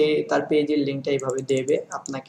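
A man talking, with light clicking from a computer keyboard.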